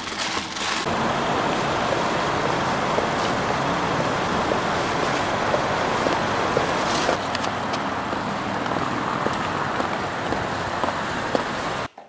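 Steady car and traffic noise, an even hiss and rumble with a few faint clicks, that steps up about a second in and cuts off abruptly near the end.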